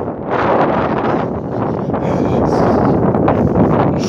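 Wind buffeting the phone's microphone, a loud rushing noise that swells and dips in gusts.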